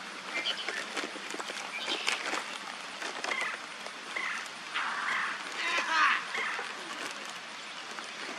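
Rummaging through a bag: rustling and small clicks as items are moved about. The rustling is louder about two seconds in and again around five to six seconds in.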